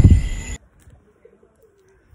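A brief loud rumbling noise that cuts off abruptly about half a second in, followed by quiet with a faint dove cooing softly.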